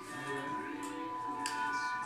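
Background music with long held notes, playing from a television showing a fireplace video.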